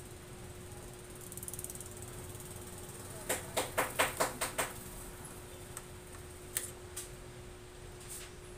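Hand-worked mechanism inside an opened-up Epson L3210 ink-tank printer, clicking in a quick run of about eight clicks midway, then a few single clicks, over a steady faint hum.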